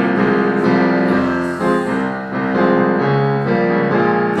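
Piano playing an instrumental accompaniment passage of held chords that change every half second or so, for an improvised stage musical.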